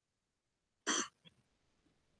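A woman gives a single short throat-clearing cough into her hand, about a second in.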